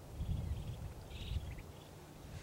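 Quiet outdoor background: a low rumble through the first second and a half, with a faint, brief high-pitched chirping about a second in.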